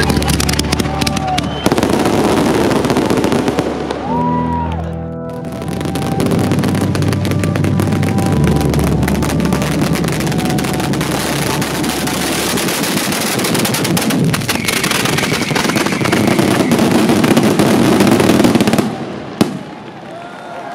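Dense, rapid crackling of a ground-level firecracker barrage (a San Severo-style batteria) going off, with a short lull about four seconds in and an abrupt stop just before the end. Background music with steady bass runs underneath.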